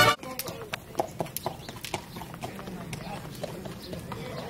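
Horse walking on a dirt street, its hooves clopping in an uneven run of steps, several a second.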